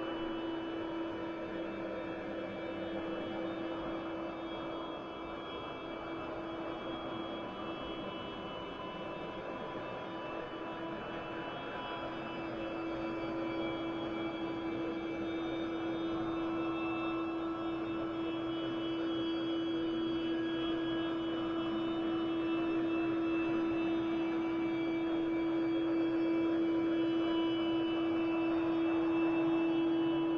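Slow ambient drone music from a draft arrangement being played back. A steady low drone tone sits under a hazy wash and several faint sustained higher tones, and it slowly grows louder from about halfway through.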